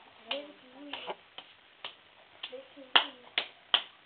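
A series of about eight short, sharp clicks at uneven spacing, the three loudest coming close together near the end, with quiet voices murmuring between them.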